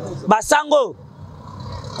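A man's voice in a short phrase, then a steady hum of street traffic.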